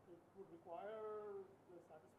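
A person's drawn-out pitched vocal sound, a held 'uhh' or 'hmm' lasting under a second, sliding down in pitch at its start and then holding.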